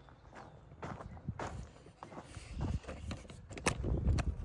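Footsteps of someone walking on bare dirt, a series of irregular scuffing steps.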